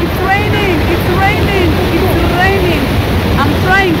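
Steady roar of a waterfall and its rushing river, with people's voices calling out over it again and again.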